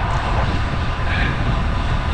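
Wind rushing over a bike-mounted action camera's microphone as a road bike descends at speed, a loud, steady, low rumbling roar.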